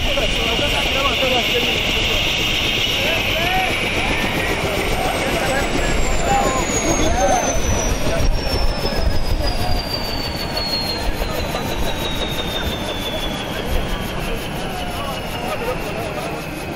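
Light turbine helicopter on the ground with its rotor turning and a steady low rotor rumble. From a few seconds in, its turbine whine falls steadily in pitch as the engine spools down. Crowd voices sound faintly in the middle.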